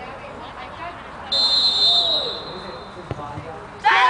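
Referee's whistle blown once for about a second, signalling that the penalty kick may be taken. About a second later comes a faint short thud of the ball being kicked.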